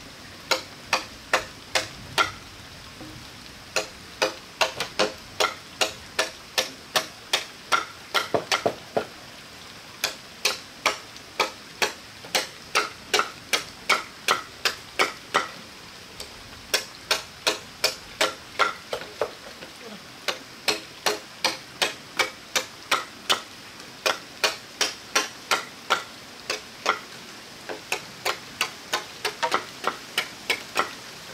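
A blade chopping hollow bamboo: sharp, ringing strikes about two a second, in runs with short pauses, over a steady background hiss.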